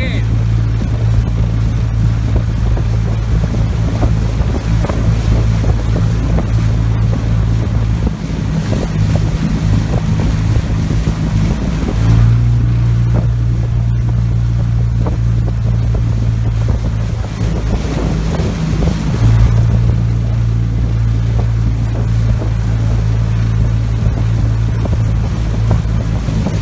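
Outboard motor of a boat pacing a rowing eight, running as a steady low drone that weakens for a few seconds about eight seconds in and again near the two-thirds mark.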